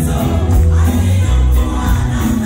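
Live gospel praise music: a group of singers in chorus over a band with keyboards and drums, with a strong bass line and a steady beat.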